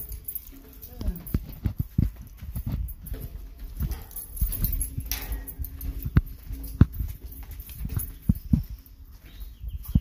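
Footsteps on hard outdoor steps and pavement: irregular short thuds while walking down from an upper landing, with rustling from the phone being handled.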